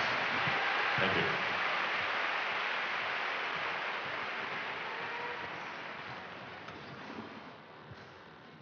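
Crowd noise filling a large indoor ice-skating arena, an even din that fades steadily away.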